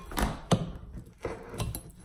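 Steel pry bar clicking and scraping against needle-nose pliers and a wooden subfloor as a floor staple is levered up: two sharp clicks in the first half-second, then fainter ticks and scraping.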